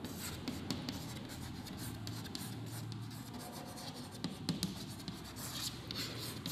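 Chalk writing on a chalkboard: a run of short, irregular scratches and taps as letters are written.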